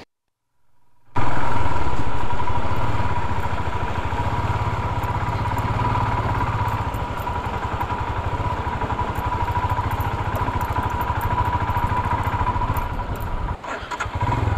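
About a second of silence, then a motorcycle engine running steadily as the bike is ridden over a rough dirt track, with light clicks and rattles; the sound drops briefly near the end.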